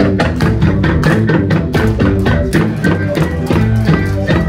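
Live Ethiopian band playing: a kebero drum beats fast, even strokes, about four or five a second, under low plucked bass krar notes, with the other strings in the mix.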